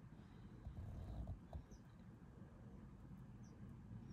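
Near silence: faint scratching of a scratch-off lottery ticket, with a few soft ticks, and three faint short high chirps that slide downward.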